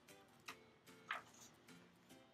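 Faint soft background music with held notes, with a couple of light clicks.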